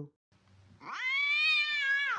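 A cat's single long, plaintive yowl: it starts about half a second in, rises in pitch, then falls away.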